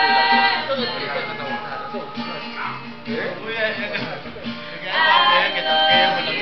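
Acoustic guitar strummed while a group sings. The singing drops off after the first second, leaving quieter guitar and voices, then swells loudly again about five seconds in.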